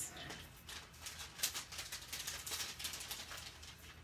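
Soft handling noises at a paper-craft table: a run of small rustles and light taps as cut cardstock pieces are picked up and laid down.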